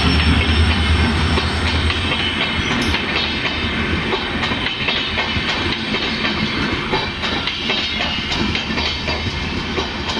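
A WDP4D diesel locomotive's engine drone fades as it passes in the first second or two. LHB passenger coaches then roll by, their wheels clattering over the rail joints.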